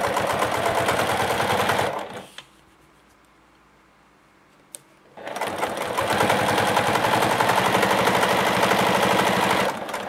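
Juki TL-2010Q semi-industrial straight-stitch sewing machine stitching at speed through four layers of vinyl with piping cord between them. It sews in two runs: it stops about two seconds in, a single click sounds in the pause, and it sews again from about five seconds until just before the end.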